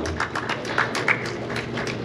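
Acoustic guitar strummed in quick, even strokes, about eight a second.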